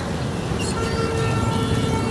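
Motorcycle engines and road traffic running in a steady low rumble, with a faint steady tone joining about a third of the way in.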